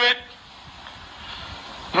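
Steady background hiss of a cricket broadcast's ground ambience, with no distinct crowd reaction or bat sound, swelling slightly near the end.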